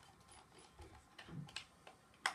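Faint clicks and scraping of a small screwdriver working at a screw behind a cardboard packaging insert, with a soft bump of the cardboard about halfway through.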